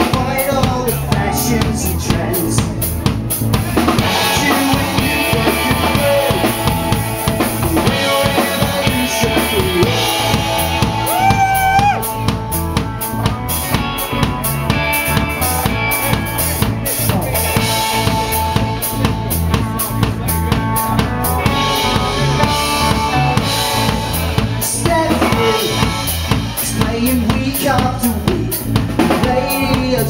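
Live rock band playing: electric guitars and bass guitar over a drum kit, with a steady beat of cymbal and snare strokes.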